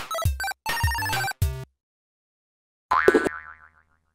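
Short electronic intro jingle: a quick run of pitched chords over bass hits, a pause of about a second, then one last chord that rings out and fades.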